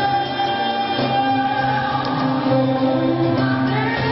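A live pop band playing, with a woman singing lead over electric guitars, bass, keyboard and drums, holding long notes.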